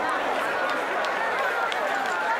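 A large crowd chattering, many voices talking at once in a steady hubbub.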